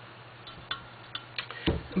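A few faint, light clicks and taps from a clear glass pitcher being turned by hand on a tabletop, over a low steady hum.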